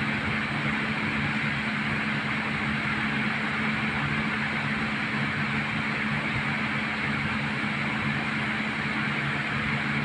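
Steady machine whir with a low hum, level and unchanging.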